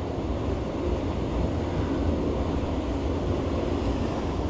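Steady rush of water flowing through a concrete spillway basin, with low wind rumble on the microphone.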